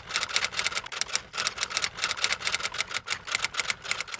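Typewriter-style typing sound effect: a rapid run of sharp key clicks, about eight a second.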